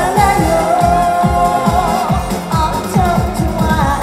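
A woman singing a Korean trot song live into a handheld microphone over a fast, steady dance beat, holding one long note with vibrato about a second in.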